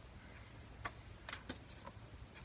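Faint clicks and rustling from hands handling a plastic hair clip in the hair, a few light ticks in the second half.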